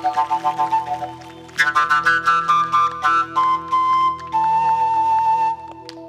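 Upright bass-register flute playing a low melody over a steady drone: a quick run of short notes, a brief dip, then long held notes that stop about half a second before the end.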